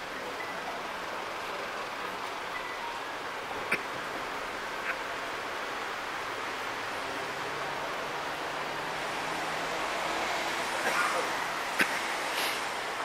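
Night-time city street ambience: a steady wash of traffic noise and faint far-off voices. Three short sharp clicks or knocks cut through it, one just under four seconds in, one about a second later, and the loudest near the end.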